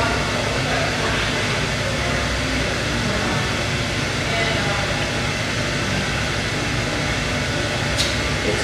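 A steady hum of background noise with indistinct voices murmuring under it.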